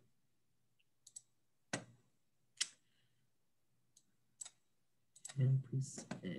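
Computer mouse clicks, about six single clicks spaced irregularly over the first four and a half seconds, as a slideshow is opened and set to present. A man's voice starts up near the end.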